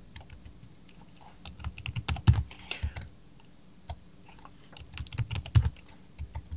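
Computer keyboard typing: two short runs of keystrokes, the first starting about a second and a half in and the second about four and a half seconds in, as text is entered into a configuration file.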